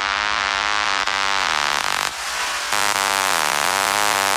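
Electro house music: a buzzing, distorted synth lead whose pitch bends up and down in repeated sweeps, over a pulsing bass, with a brief drop-out just after two seconds.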